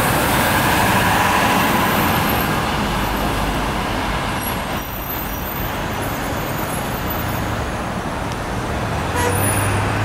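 NABI 40-SFW city bus driving away up a busy street, its engine and road noise slowly fading into the surrounding traffic. Near the end a low hum grows louder as other traffic comes closer.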